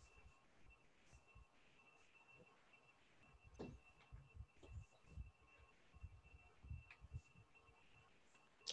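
Near silence: faint room tone with a thin steady hum and a few soft knocks and clicks in the second half.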